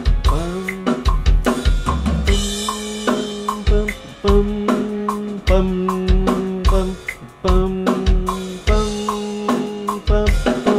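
Playback of the song's pre-chorus over studio monitors: a drum kit with kick drum and snare hits, over held pitched notes from another instrument.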